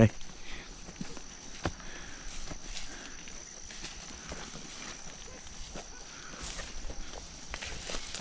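Footsteps walking through grass and undergrowth, with irregular rustles and small snaps of stems, over a steady high-pitched insect drone.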